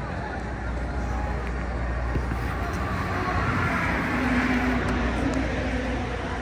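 Road traffic noise with a vehicle going by, swelling to a peak past the middle and easing off, over a steady low hum in the second half.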